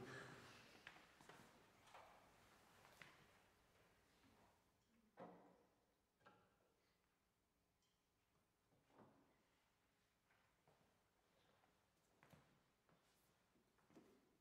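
Near silence with a few faint knocks and thuds as a grand piano's lid is raised and propped open.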